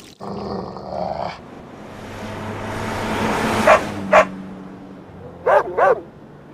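A dog barking: two short barks a little past halfway, then two higher, bending barks just before the end, over a steady rushing background.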